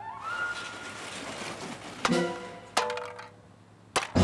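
Cartoon sound effects over background music: a rising swish at the start, then two sharp knocks a little under a second apart, each followed by a short ringing note.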